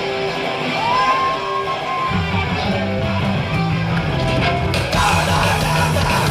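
Hardcore punk band playing live at the start of a song: electric guitar first with a held high note, the bass guitar joining about two seconds in, and the full band with drums and cymbals crashing in near the end.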